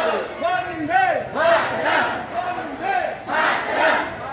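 A crowd of marching schoolchildren and adults chanting slogans in unison, the rising and falling chanted phrases repeating about once a second.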